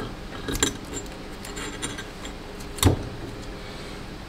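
Light metallic clicks and clinks of a core shot bait mold and its inner rods being handled as it is opened, with one sharper knock about three seconds in.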